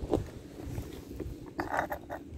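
Dry cat kibble rattling in a small glass jar and spilling out onto paving stones in a short burst near the end, after a light click just after the start.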